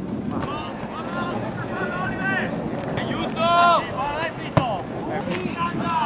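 Voices of players and spectators shouting and calling across an outdoor football pitch, with one loud drawn-out call about three and a half seconds in. A single sharp knock comes shortly after, over wind noise on the microphone.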